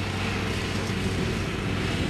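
Steady background noise, an even hiss with a constant low hum underneath, at a moderate level and with no distinct events.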